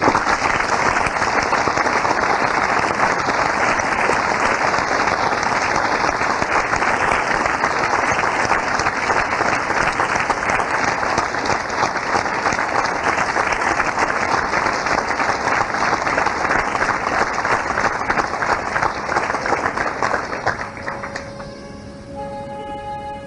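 Theatre audience applauding: loud, dense clapping that breaks out suddenly and holds steady, then dies away near the end as orchestral music comes in with held notes.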